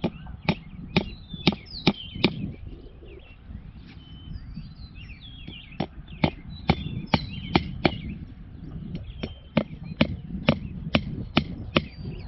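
Hammer driving fence staples into a wooden post to fix woven V-mesh wire: sharp ringing blows about two a second, in three runs of six or so with short pauses between. Birds chirp in the background.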